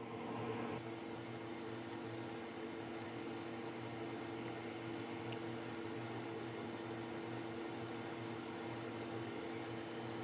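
Steady low machine hum with a faint hiss: room tone.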